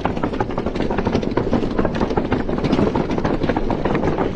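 Mountain bike tyres rolling over the spaced wooden planks of a suspension bridge: a continuous rapid clatter of knocks with the bike and deck rattling under it.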